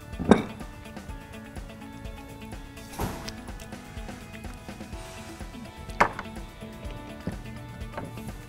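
A few light knocks and clinks of a metal vacuum pump housing and hand tool being handled and set down on a workbench, the loudest just after the start and others about three and six seconds in, over steady background music.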